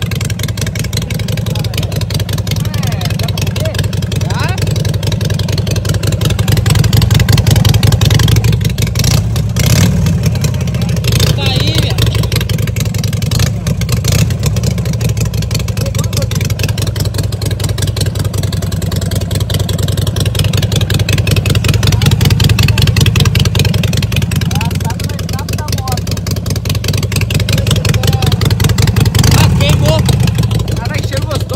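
Harley-Davidson V-twin engine running, with the throttle opened into a few swells of revving.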